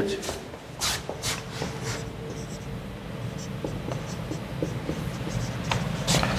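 Marker writing on a whiteboard, with light taps and scratches of the pen strokes.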